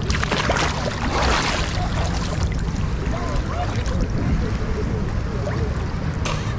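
A person ducking under shallow seawater: a splash and a rush of water over the first couple of seconds, then steady water movement and wind rumbling on the camera microphone.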